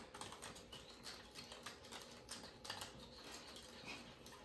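Faint, irregular light clicks and crinkles from hands handling the Poppin' Cookin' candy kit's small plastic packets and plastic tray on a table.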